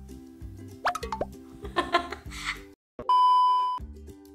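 Background music with a light repeating pattern, with a quick rising blip-like sound effect about a second in. Near the end the music cuts out briefly and a loud, steady, high electronic beep sounds for under a second, like a censor bleep, before the music resumes.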